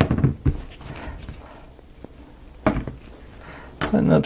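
Light clicks and knocks of thin laser-cut plywood model parts being handled and set down on a table: a few clicks at the start, then two single knocks later on.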